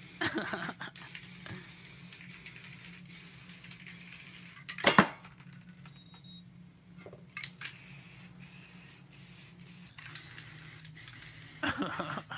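Aerosol spray-paint can hissing in short bursts onto canvas, with brief pauses between them. A sharp knock about five seconds in is the loudest sound.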